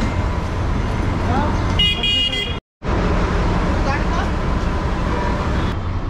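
Busy street traffic with a steady low engine rumble and faint voices. A vehicle horn sounds once, briefly, about two seconds in, and a moment later the sound cuts out completely for a split second before the traffic noise returns.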